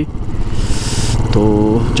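Motorcycle engine running steadily while riding, with a brief hiss about half a second in.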